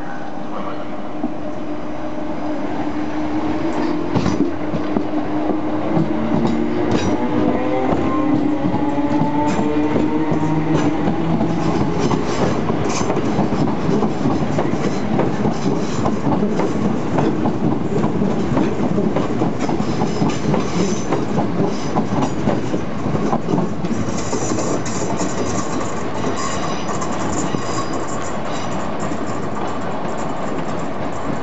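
First Capital Connect Class 319 electric multiple unit accelerating past. Its motors whine, rising in pitch over the first ten seconds or so, then the wheels clatter rhythmically over the rail joints as the carriages go by, with high-pitched squealing near the end.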